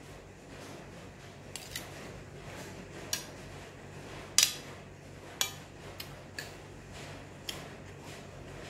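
Metal spoon and fork clinking against a ceramic plate while eating: a scatter of sharp clicks, the loudest about four and a half seconds in.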